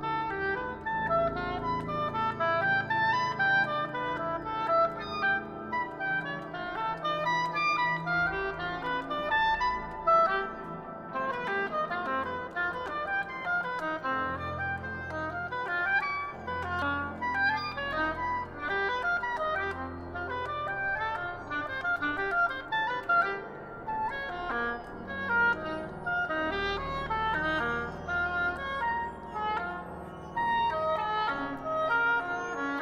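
Contemporary music for oboe and electronics: the oboe plays rapid, dense runs of short notes over low held tones.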